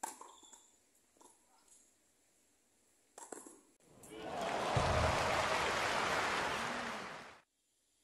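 A tennis racket strikes the ball in a forehand, followed by a few fainter ball contacts over the next three seconds. About four seconds in, a loud, even rushing noise swells up, holds for about three seconds, and cuts off abruptly.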